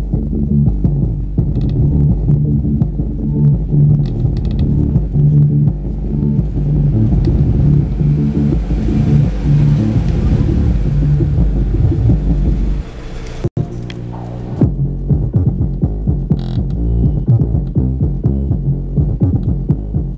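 Bass-heavy electronic music played loud through a CDR King Jargon 2.1 computer speaker system's subwoofer. A hissing build-up rises through the middle, the sound cuts out for an instant a little past halfway, then the beat comes back.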